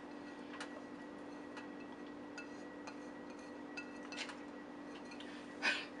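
A faint steady hum with a few light, scattered ticks and taps as shredded cheese is tipped from a bowl into a saucepan.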